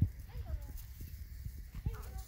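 Bull Terrier puppies scampering over dry leaves and pine needles: rustling and soft, irregular footfall thumps, with a couple of short high squeaks about half a second in and near the end.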